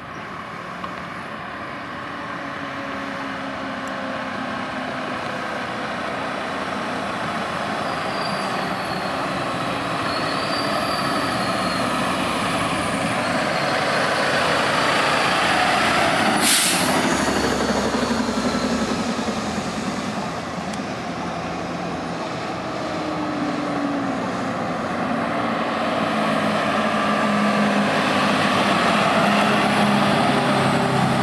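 Heavy fire engine's diesel growing louder as it approaches and passes, with one sharp hiss of air brakes about halfway through. A second vehicle's engine rises in level near the end as the smaller patrol truck comes by.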